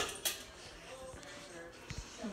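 Ceiling fan light-kit pull-chain switch clicking as the chain is pulled and let go to turn the light on, a short sharp click about a quarter second in, followed by a low steady background.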